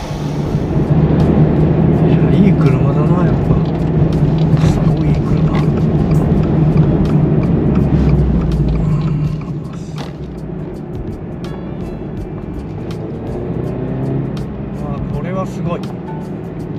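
FA24 2.4-litre flat-four engine of a BRZ/GR86 droning steadily under way, heard from inside the cabin, dropping in level about nine and a half seconds in. Background music plays over it.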